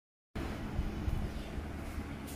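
A low, steady rumble with a faint hum, starting abruptly a moment in after a brief silence.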